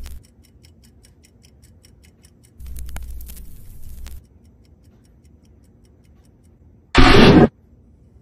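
Rapid, regular ticking like a clock, with a noisy stretch and low rumble about three seconds in. Near the end comes a sudden, very loud half-second burst of noise.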